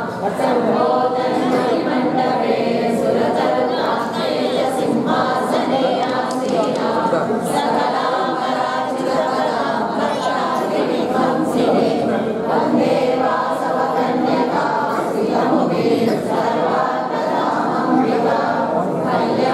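A crowd of devotees singing a devotional hymn together, many voices at once with no instruments.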